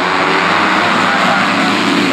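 A pack of about ten enduro motorcycles accelerating together off the start line: many engines revving at once, a loud, dense, steady mix.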